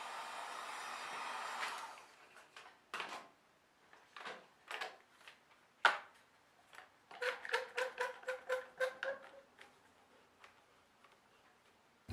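Heat gun blowing faintly and stopping about two seconds in, followed by a few scattered clicks. Past the middle comes a run of about a dozen quick ratcheting clicks with a faint squeak as a quick-grip bar clamp is pumped tight on the Kydex press.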